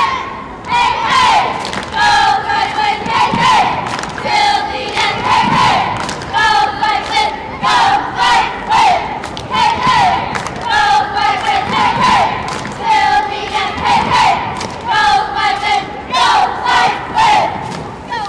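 A group of cheerleaders and young girls chanting a cheer together, shouting in a steady rhythm of roughly one shout a second.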